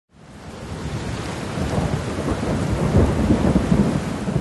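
A herd of cattle moving at a trot through a wooden chute, many hooves thudding on wet ground in a jumbled, rumbling patter. It fades in over the first second.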